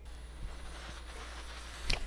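Faint steady hiss of air blowing from a hot air rework station's handpiece, with one short knock near the end.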